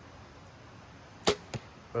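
Compound bow shot: a single sharp snap of the string as the arrow is released, about a second and a quarter in, followed about a quarter second later by a fainter knock of the arrow hitting the target.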